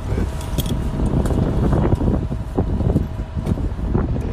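Steady low rumble with wind buffeting the phone's microphone inside a helicopter cabin, under a faint steady whine. Voices murmur faintly now and then.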